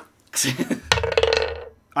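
A person making a drawn-out, burp-like vocal croak: a rough start about a third of a second in, then a low held tone that fades out.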